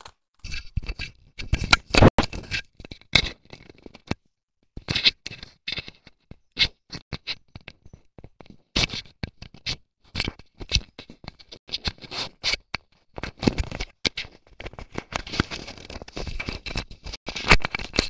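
Close handling noise from an earphone-cable microphone being fiddled with by hand: irregular scratching and rubbing broken up by many small clicks, with a couple of short pauses.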